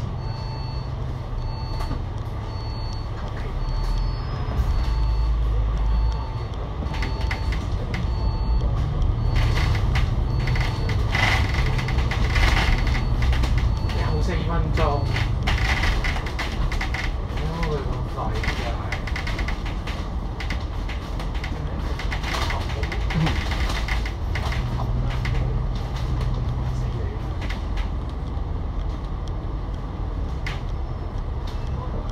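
Cabin sound of an Alexander Dennis Enviro500 MMC double-decker bus with a Cummins L9 diesel and ZF EcoLife automatic gearbox. The bus idles, then pulls away, and engine and road noise rise and fall as it drives through traffic. A repeating beep, about two a second, sounds through the first several seconds and stops.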